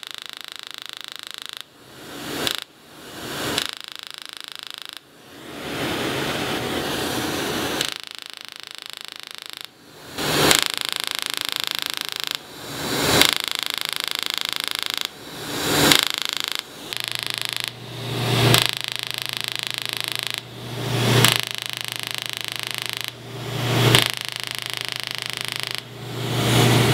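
Skin-resurfacing laser and the suction tube beside it running during treatment. A steady machine hum is broken every two to three seconds by a sound that swells over about a second and ends in a sharp click.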